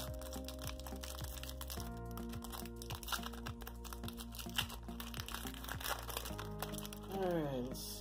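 Soft background music with held chords, over the crinkling and crackling of a trading-card pack wrapper being torn open and handled. A man's voice comes in near the end.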